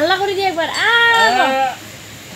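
A few high, drawn-out vocal calls in quick succession, each rising and falling in pitch, stopping shortly before the end.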